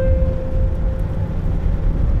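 Steady low rumble of a car driving on an asphalt road, heard from inside the cabin. A single note of background music sounds at the start and fades away within about a second.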